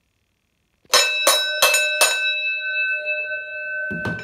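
Wrestling ring bell struck four times in quick succession about a second in, its ringing hanging on and slowly fading afterwards: the bell that signals the start of the match.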